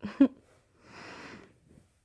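A short vocal sound from a woman right at the start, then a soft breathy exhale about a second in, lasting around half a second.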